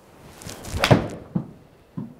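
Golf iron swishing through the downswing and striking a ball off a hitting mat about a second in, with a sharp thunk. A softer knock follows about half a second later as the ball hits the simulator's impact screen.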